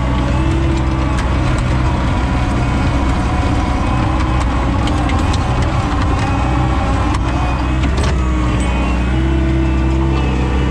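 A John Deere 675B skid steer's diesel engine running steadily as its toothed bucket pushes a load of snow and peeled-up ice. The engine note turns uneven mid-way and settles near the end, with scattered sharp clicks and knocks of ice and steel throughout.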